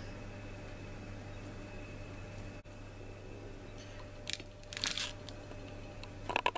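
A steady low hum, then, a little past four seconds in, a few short scrapes and clicks of a metal spoon in a jar of fig jam.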